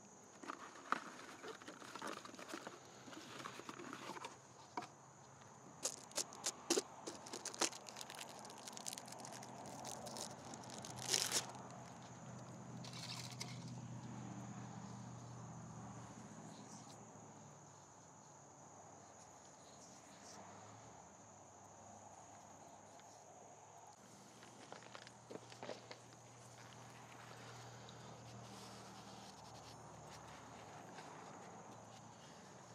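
Gloved hands working around an open oil filter housing in an engine bay: scattered light clicks and taps over the first dozen seconds, a few more near the end. A low steady hum comes in about halfway.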